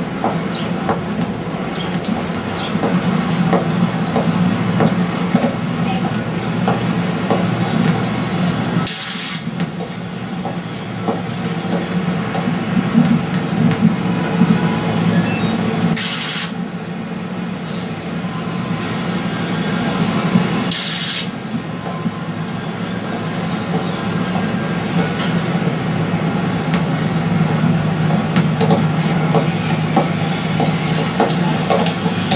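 Soundtrack of a projected film playing in the room: a steady low mechanical rumble with a noisy wash above it, broken three times by brief bursts of hiss.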